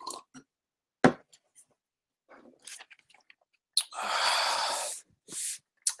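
Microphone handling noise as the streaming device is picked up and carried: a short knock about a second in, then a second-long rubbing hiss near the end.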